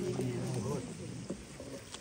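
Congregation's voices faintly chanting together, with several held pitches, trailing off about a second in.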